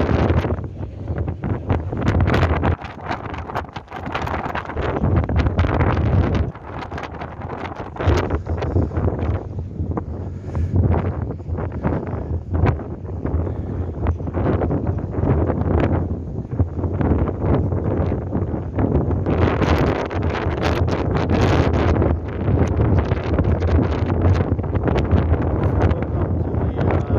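Wind buffeting the microphone on the open deck of a moving car ferry, in gusts that rise and fall unevenly, over a steady low rumble from the ship.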